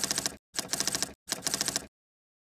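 Typewriter typing sound effect: three quick runs of rapid key clacks, each about half a second long, timed to text being typed onto the screen.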